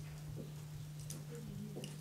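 Faint background ambience: a steady low hum with a few light ticks.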